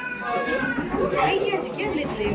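Overlapping chatter of children and adults, with high-pitched children's voices.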